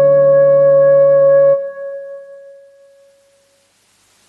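Instrumental karaoke backing track ending on a held B major seventh chord that cuts off about a second and a half in, leaving one tone ringing and fading away over the next two seconds, followed by faint hiss.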